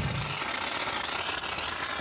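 Ride-on scale live-steam locomotive hissing as steam vents beside its driving wheels and rods.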